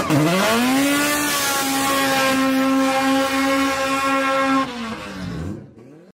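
A car engine revving up, holding a steady high pitch for about three and a half seconds, then dropping in pitch and fading out near the end.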